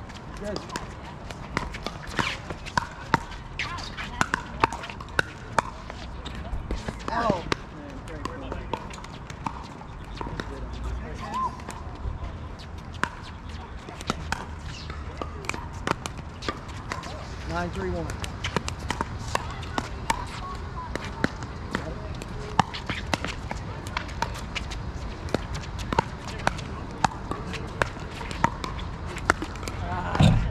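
Pickleball paddles striking the hollow plastic ball and the ball bouncing on the hard court: many sharp pops spread through the rally, with players' voices now and then.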